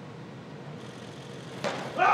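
Low arena hall noise while a 147 kg barbell is pulled from the floor in a clean, then one sharp thump near the end as the bar is caught on the shoulders and the lifter's feet land on the platform.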